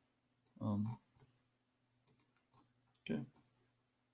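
Faint, scattered clicks of a computer mouse as a 3-D modelling tool is worked, with two short voiced sounds from a person, one just under a second in and one about three seconds in.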